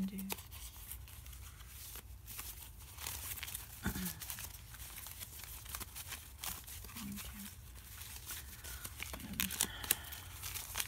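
A deck of thin printer-paper tarot cards being shuffled by hand: irregular soft papery flicks and rustles as the sheets slide and riffle over one another.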